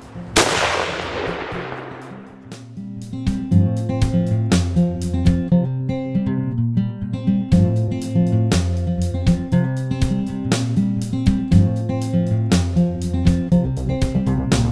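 .30-378 Weatherby Magnum rifle fired once about half a second in, the report trailing off over about two seconds. Music with guitar and a steady beat plays under it and carries on afterwards.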